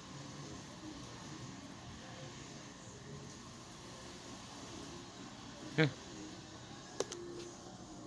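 Low steady room hum and hiss, with a short vocal sound about six seconds in and a sharp click about a second later as the loosely mounted camera shifts.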